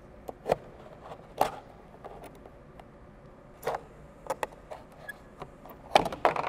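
Thin clear PET plastic of a juice bottle clicking and crinkling as it is handled and worked: a dozen or so separate sharp clicks, a few near the start and more in a cluster from about three and a half seconds in.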